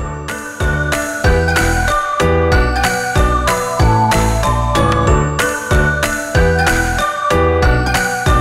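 Background music with a steady beat and bright, ringing high notes, swelling in the first second or so.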